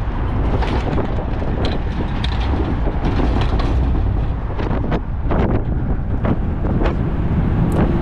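Wind buffeting an exterior camera microphone at highway speed on a towed trailer load, over steady deep road and tyre rumble, with scattered short pops.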